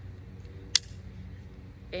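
One sharp plastic click, about a second in, from the quick-release buckle of a thick nylon dog collar being handled. A steady low hum runs underneath.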